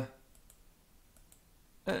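A pause in a man's speech, with a few faint, sharp clicks in the quiet; his voice starts again near the end.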